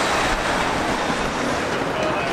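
Steady rushing noise of city street traffic at a busy intersection, with no distinct events.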